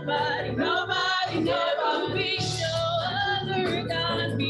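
A woman singing a gospel song through a handheld microphone, with other voices joining in and a steady low accompaniment underneath.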